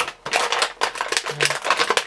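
Hard plastic toy parts clicking and rattling in quick, irregular succession as the pieces of a miniature dock are handled and fitted together.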